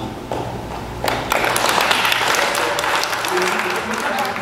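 Audience applauding: a burst of clapping that starts about a second in and carries on to near the end, with a voice resuming under it.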